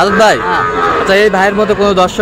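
A calf moos once at the very start, a short call that falls in pitch, and a man's voice follows.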